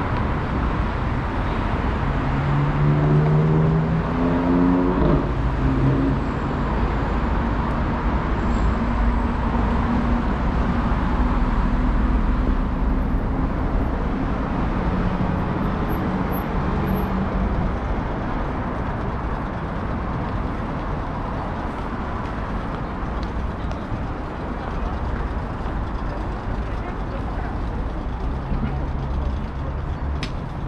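Road traffic on a wide multi-lane city street: cars and buses running past in a continuous low rumble, somewhat louder in the first dozen seconds.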